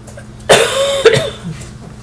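Two loud coughs in quick succession, about half a second apart.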